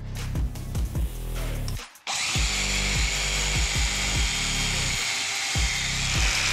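From about two seconds in, a belt-sander attachment driven by a DeWalt 20V brushless angle grinder runs steadily, its abrasive belt hissing against a metal tube, over background music.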